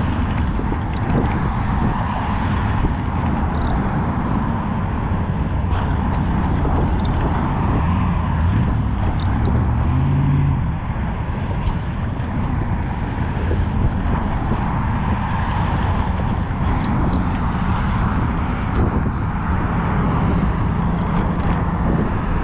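Steady wind rumbling on the microphone.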